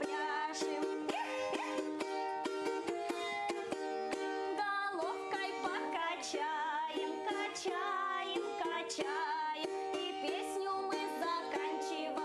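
A balalaika strummed in a steady rhythm, accompanying voices singing a Russian folk game song.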